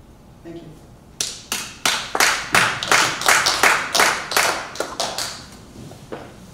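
Applause from several people clapping in a meeting hall. It starts about a second in with sharp, quick claps, about five a second, and dies away a little after five seconds.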